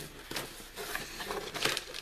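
Light rustling with a few small clicks and knocks, as of things being handled on a table.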